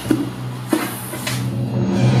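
Dramatic sound effects from an edited soundtrack: a steady low hum with two sharp hits about half a second apart, and a rush of noise that cuts off suddenly just before the end.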